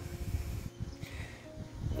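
Faint background music with a few steady held tones, over a low, uneven rumble of wind on the microphone.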